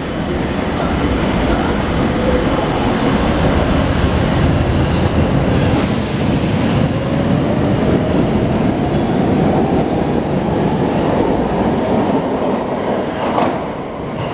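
Older Brussels metro train pulling out of the station: a steady running noise of wheels on track, with a motor whine that rises in pitch as the train gathers speed. A brief hiss comes about six seconds in. The sound eases off near the end as the last car leaves.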